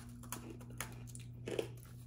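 Faint crunching and chewing of crisp freeze-dried mango pieces, a few scattered crunches.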